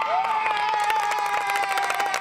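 Audience applause: many hands clapping, with one person holding a single long, high cheer over it that sags slightly in pitch near the end.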